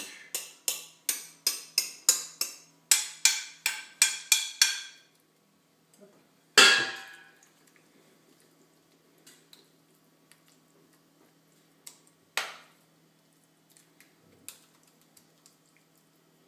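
A metal utensil knocks against a glass mixing bowl in a quick run of sharp taps, about three a second for some five seconds, while thick terrine mixture is scraped out. After that comes a single louder clink, another near the twelve-second mark, and a faint tap later on.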